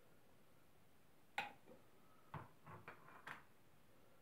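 Small containers handled and set down on a tabletop: one sharp click about a second and a half in, then a quick cluster of lighter knocks and clicks.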